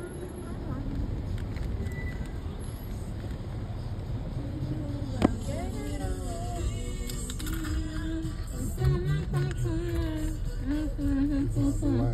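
Low rumble of a car's cabin while creeping along in traffic, with one sharp click about five seconds in. From about six seconds in a sung melody joins it, held notes stepping up and down.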